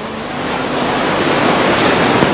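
Audience applause: a dense, even wash of clapping that builds up louder through the pause.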